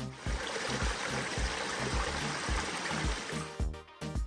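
Background music with a steady bass beat, over a dense rushing noise, like running water, that stops abruptly near the end.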